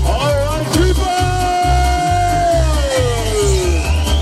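Live band with electronic backing playing dance music on a steady kick-drum beat of about two a second. Over it a singer holds one long note that slides slowly down in pitch.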